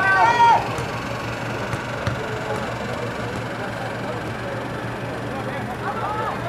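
Players on a soccer field shouting calls to each other in the first half-second, over a steady low hum and open-air background noise.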